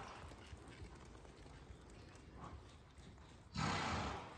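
A horse walking on sand arena footing, with faint hoofbeats. Near the end there is one short, loud rush of breath: the horse blowing out through its nostrils.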